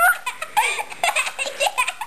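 A young girl laughing in short, high-pitched bursts.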